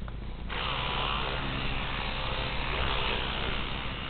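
A battery-powered electric toothbrush switches on about half a second in. Its small motor buzzes steadily as it brushes teeth.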